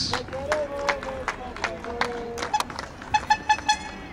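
A horn sounds four quick short toots about three seconds in, over scattered sharp claps or knocks and faint distant voices.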